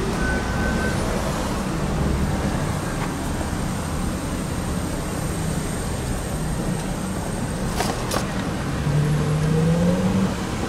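Steady city street traffic: car engines and tyre noise passing close by. Near the end one vehicle's engine rises in pitch as it pulls away, and two sharp clicks come shortly before.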